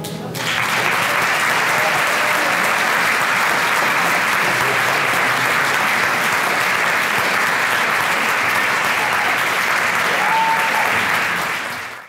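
Concert audience applauding steadily just after a choir-and-piano song ends, the clapping building in within the first half second and fading out at the very end.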